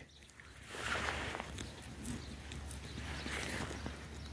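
Faint rustling in short pasture grass, swelling softly about a second in and again past three seconds, where goats are grazing close by.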